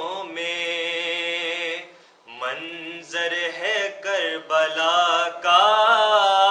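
A man's solo, unaccompanied voice chanting a salam, a devotional recitation. He holds one long steady note, breaks off briefly about two seconds in, then goes on in wavering phrases that grow louder toward the end.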